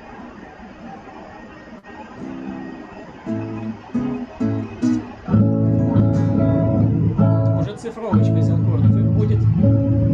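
Guitar played over a video call: a few single notes and chords start about two seconds in, then full strummed chords ring out much louder from about halfway, changing chord near the end.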